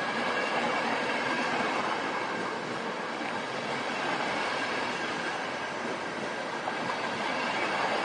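Passenger coaches rolling past at speed: a steady, even noise of wheels running on the rails.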